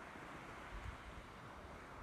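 Faint, steady hiss of a light sea breeze on an open beach, with a low rumble and no distinct events.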